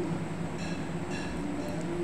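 Steady low background hum, with a couple of faint brief sounds about two-thirds of a second and just over a second in.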